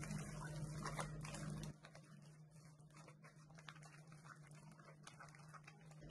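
Faint soft clicks and scrapes of a silicone spatula working egg into a thick dough in a glass bowl, over a low steady hum that stops about a second and a half in. After that, near silence with only a few faint ticks.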